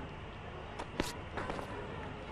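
Faint ambience of a cricket ground on a broadcast feed, a steady low hiss, with a few short sharp clicks, the clearest about a second in.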